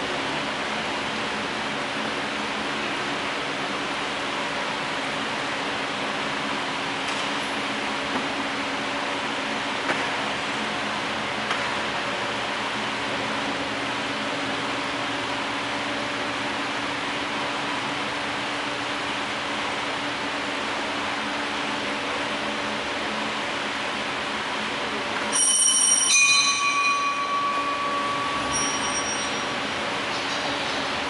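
Steady background noise with a low hum. About 25 seconds in, a brief clear metallic ring with several high tones, like a bell or struck metal, fades over a couple of seconds.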